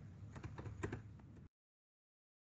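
Faint computer keyboard keystrokes, a quick run of light clicks, cutting off to dead silence about one and a half seconds in.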